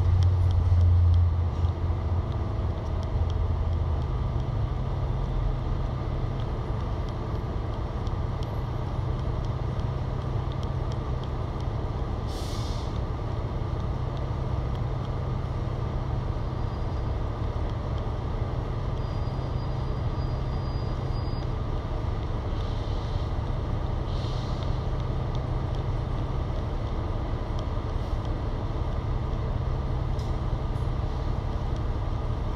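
Cummins L9 diesel engine of an Alexander Dennis Enviro500 MMC double-decker bus idling while the bus stands still, heard from inside on the upper deck: a steady low hum, louder for the first couple of seconds. Short hisses of compressed air from the bus's air system come about twelve seconds in and twice more later.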